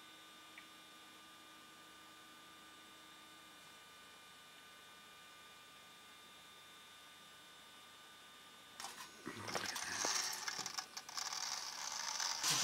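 Faint steady electrical hum. About nine seconds in, a much louder, uneven rattling and clattering begins: a Hornby O gauge electric locomotive running over tinplate track.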